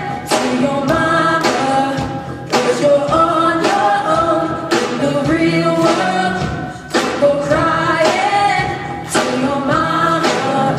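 Live rock band playing a song: several voices singing together over electric guitars, bass and a drum kit with a steady beat.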